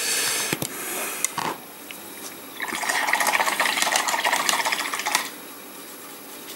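Water spilling and splashing for about two and a half seconds in the middle, after a shorter noisy rustle at the start.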